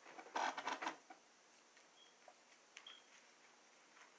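Paper pages of a Bible being leafed through: a short burst of rustling and flicking about half a second in, then faint scattered ticks.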